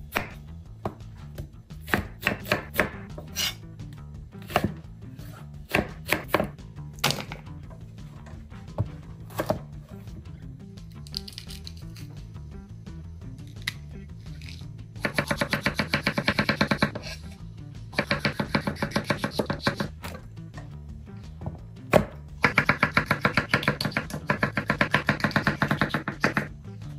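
Chef's knife striking a wooden cutting board: scattered single knocks as an onion is cut, then three quick runs of rapid slicing strokes as an orange bell pepper is cut into rings. Background music underneath.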